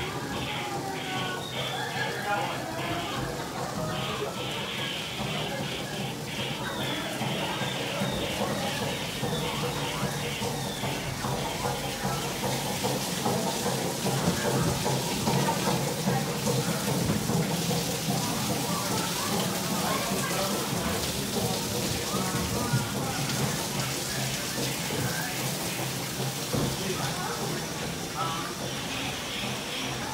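Steady rush and splash of water around a dark ride's boat in its flooded channel, with faint voices and ride audio underneath.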